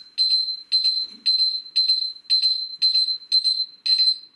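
Tumble dryer's end-of-cycle signal: a loud, high beep repeating about twice a second, each beep about half a second long, signalling that the drying cycle is finished.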